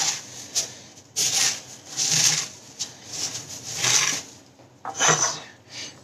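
Cornflakes being crushed by hand in a tray: a dry crackling crunch in repeated strokes, about one a second.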